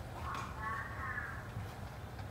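A faint, drawn-out call in the background, over a steady low hum.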